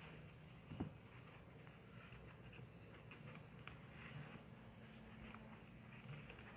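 Near silence with faint rustling and small ticks of thread and cloth being handled as a knot is tied in heavy kite thread on a fabric doll, with one brief louder sound a little under a second in.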